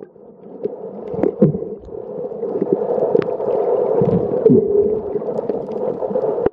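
Swimming heard from underwater: muffled splashes, bubbles and scattered clicks from a skin diver's strokes, over a steady droning hum that swells through the middle and stays loud toward the end.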